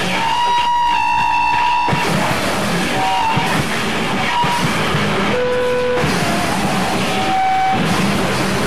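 Loud harsh noise music: a dense, distorted wall of noise with no steady beat. It changes texture abruptly about two seconds in and again near six seconds, with short held whistling tones cutting through.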